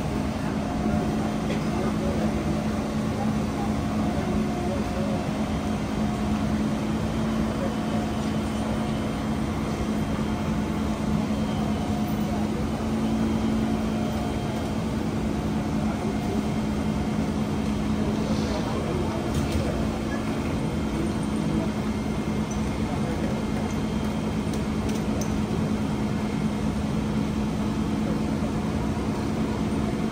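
Steady hum of a Siemens C651 MRT train standing at a platform with its doors open, holding one low tone with no change in pitch, under faint voices.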